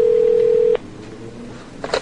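A single steady telephone tone about a second long, followed near the end by a short click.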